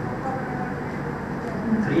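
Steady classroom room noise, an even low rumble with faint traces of voices, in a pause between sentences; a man's voice starts again right at the end.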